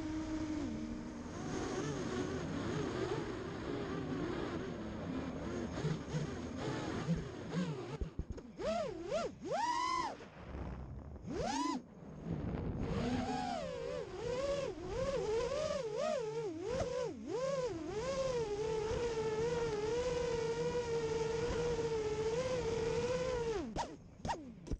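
Mini FPV racing quadcopter's brushless motors (ZMX Fusion 2206-2300kv) whining with throttle. The pitch swoops up and down sharply through punches in the middle, then holds a steadier, slightly wavering buzz for the last several seconds, with rushing air underneath.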